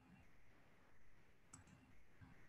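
Near silence with a single faint computer mouse click about one and a half seconds in.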